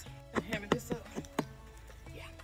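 A brief spoken line over steady background music.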